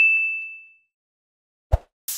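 A notification-bell ding sound effect: one bright, high ringing tone fading away over about half a second. A short dull thump comes near the end.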